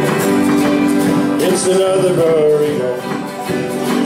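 Live country band playing, acoustic guitars strumming under a lead line that slides in pitch, between sung verses of the song.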